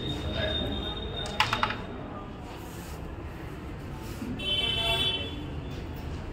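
Carrom shot: three quick, sharp clicks about a second and a half in as the flicked striker hits a coin and knocks across the board, over a murmur of voices.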